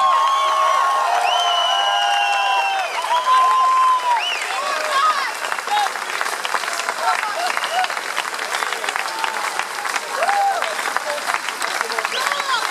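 Concert audience applauding, with cheers and whoops over the clapping in the first few seconds, settling into steady clapping.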